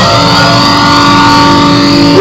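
Solid-body electric guitar holding one sustained note, struck right at the start and ringing on steadily.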